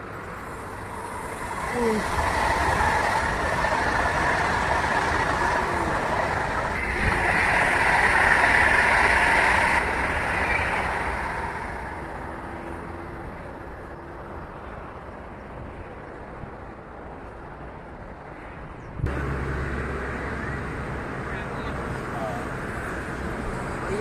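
A Jakarta–Bandung KCIC400AF high-speed electric train passing at speed on a viaduct: a rushing noise that swells about two seconds in, is loudest around eight to ten seconds, then fades away. Near the end a sudden cut brings in a steady low rumble.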